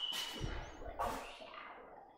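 Footsteps on a hard floor, with a brief high squeak at the start and a couple of soft thumps as they go, fading off toward the end.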